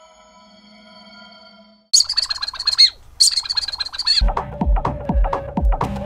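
Intro music: the held chime tones of a logo jingle fade out, then two short bursts of bird-like chirping and warbling, about a second each, and from about four seconds in a music track with a steady beat of about two thumps a second.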